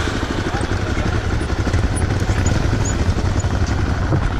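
Dirt bike engine running steadily just after being started, heard close up from its handlebars as a loud, rough low rumble.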